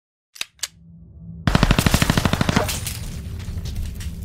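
Machine-gun burst sound effect: two sharp clicks, then a rapid burst of about a dozen shots a second lasting about a second, trailing off into a low rumble.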